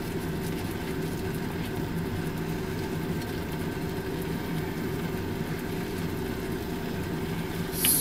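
Hamburg steaks simmering in sauce in a frying pan: a steady hiss under a low, even hum.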